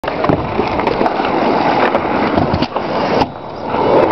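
Kick scooter wheels rolling over rough asphalt: a steady rumble with scattered small clicks and knocks. The rumble drops off suddenly a little past three seconds in.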